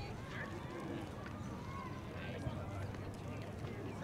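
Distant, indistinct shouts and chatter of players and sideline spectators at an outdoor soccer game, over a steady low rumble.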